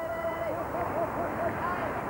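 Spectators beside a cross-country ski course calling out encouragement as a skier passes: one held high call, then a quick string of short rising-and-falling cries, over steady outdoor course noise.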